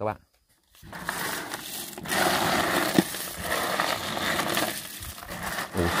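Hands stirring a plastic tub of muddy snails mixed with groundbait, the shells crunching and rustling against each other, with one sharp click about three seconds in.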